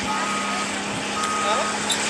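Reversing alarm of heavy equipment working at a garbage dump, two steady half-second beeps about a second apart, over the engine's steady drone.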